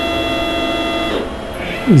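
CNC mill's X-axis stepper motor jogging the axis in the positive direction, a steady whine made of several pitches that cuts off about a second in when the jog stops.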